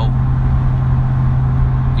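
Steady car-cabin noise while driving: engine and road rumble under a constant deep hum.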